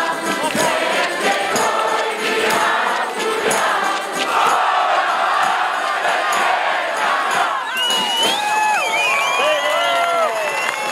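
A large ensemble of accordions plays with a singing crowd and a steady beat of percussion and bells, then stops about eight seconds in, leaving crowd voices shouting and cheering.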